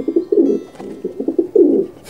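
White doves cooing, several low coos in quick succession.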